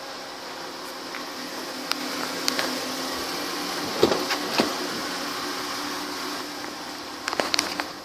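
Car rear door being opened: the exterior handle is pulled and the latch releases with a few clicks about four seconds in. Further clicks and knocks come near the end, over a steady hum.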